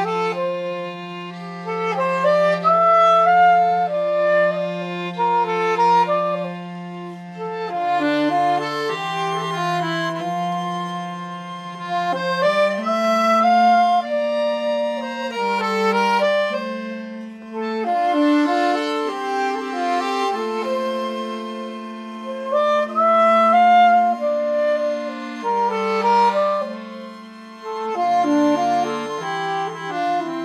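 Folk quartet playing an instrumental tune: a saxophone melody with fiddle, accordion and hurdy-gurdy, over held low bass notes that shift every few seconds.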